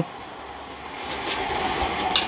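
Steady rumbling noise of a passing vehicle, swelling about a second in.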